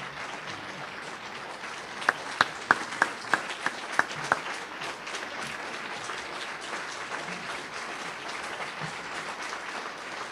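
Audience applauding steadily, with one person clapping loudly close by, about eight sharp claps, from about two seconds in to nearly halfway through.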